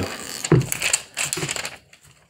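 Plastic screen-protector film being peeled off the screen of a new Samsung Galaxy S22 Ultra: a crackling, crinkling rustle of plastic, loudest about half a second in and fading toward the end.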